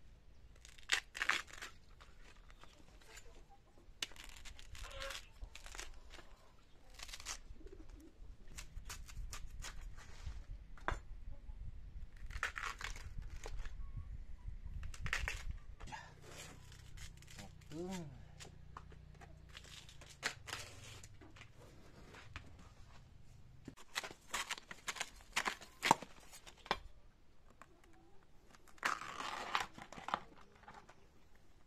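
Bamboo shoot husk sheaths being torn and stripped off by hand, in irregular bursts of tearing and crackling with rustling of the loose sheaths between.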